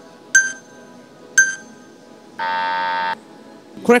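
Quiz-show timer sound effect: two short high pings about a second apart, then a buzzer sounding for just under a second, marking that time is up for answering.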